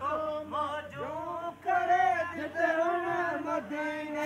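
Men's voices singing a Sindhi devotional song in praise of Madina, unaccompanied, with long wavering held notes.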